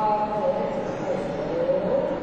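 A man's voice intoning in long, drawn-out pitches, like a liturgical call during ritual bowing, over the murmur of a large congregation.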